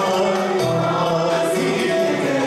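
Live Turkish classical art song: a male soloist singing a sustained, melismatic melody, accompanied by violin and an instrumental ensemble, with choir voices behind.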